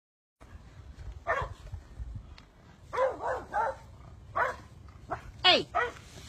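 Dog barking: short single barks, spaced out at first and then coming quicker. A person calls "hey" near the end.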